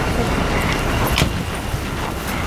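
Busy street ambience: wind buffeting the microphone over a steady rumble of road traffic, with a few short clicks.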